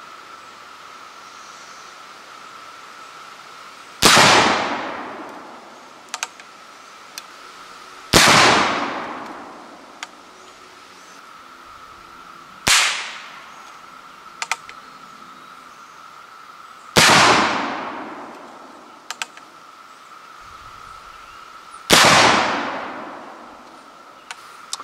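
Pedersoli Model 1859 Sharps infantry rifle, a percussion breechloader, firing paper cartridges with nitrated tissue-paper bases: four loud shots about four to five seconds apart, each ringing out slowly. The third report is short and sharp: the percussion cap going off without igniting the cartridge. Light clicks from the rifle's action come between shots.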